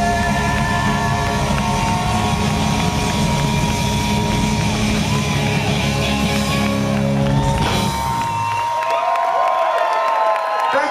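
Live rock band with guitars and drums playing out the end of a song, stopping about eight seconds in. Crowd cheering and whooping follows.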